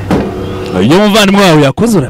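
A man's voice drawing out a loud "no", rising in pitch and then held, cut off abruptly near the end. Otherwise speech only.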